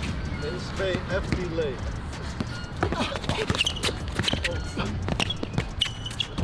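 A basketball dribbled on an outdoor court, with a run of sharp bounces in the second half and voices in the background.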